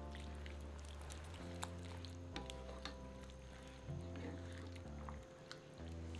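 Soft background music of sustained notes over a low bass line that changes every second or so, with a few faint clicks of a slotted spatula stirring in a cast-iron casserole.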